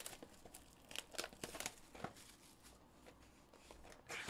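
Plastic shrink wrap being torn and peeled off a sealed trading-card box: a run of faint crinkles and crackles, thickest in the first two seconds, then sparser.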